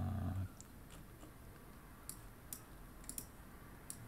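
Computer mouse clicking a few times, faint and spaced out, in a quiet room. A short low hum sounds in the first half-second.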